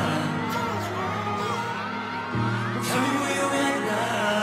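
Pop song with a man singing over a heavy bass line and beat. The bass eases off briefly, then comes back in strongly a little over two seconds in.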